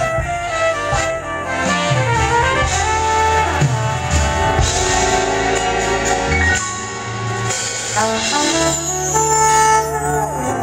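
Live R&B horn section of saxophones, trumpets and trombone playing together over electric bass and drums, with sustained bass notes under the horn lines.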